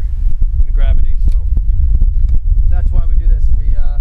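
Wind buffeting the microphone, a steady low rumble, with short stretches of a person speaking.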